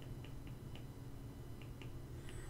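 A low steady hum, with a handful of faint short ticks scattered through it.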